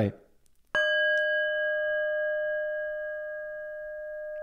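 Small brass singing bowl resting on an open palm, struck once with a striker about a second in, then ringing on in a steady, slowly fading tone made of several pitches at once.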